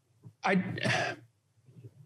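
A man says a short "I" about half a second in and then clears his throat once, briefly.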